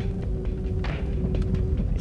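Low engine and road rumble inside a slow-moving car, with faint music holding one steady note that stops shortly before the end.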